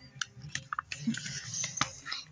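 Page of a hardcover picture book being turned by hand: light paper rustling with a few sharp clicks and taps from the pages and cover.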